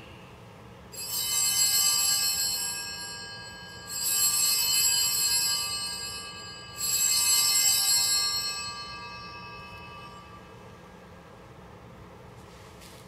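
Altar bells (sanctus bells) rung three times, about three seconds apart, each ring sounding out and slowly fading. They mark the elevation of the chalice after the consecration.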